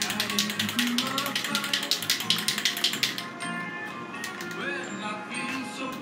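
Aerosol spray-paint can being shaken, its mixing ball rattling in a quick run of about eight clicks a second for roughly the first three seconds, over background music.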